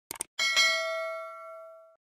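Subscribe-animation sound effect: a quick double mouse click, then a bright notification-bell ding about half a second in that rings on and fades, ending abruptly near the end.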